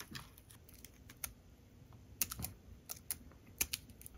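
Scattered small, sharp clicks and crackles of stiff clear vacuum-formed plastic packaging being bent and pried as a metal kit part is worked free of it.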